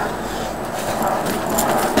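Quick footfalls of someone running in place on a porch floor, coming thicker toward the end, over a steady hiss.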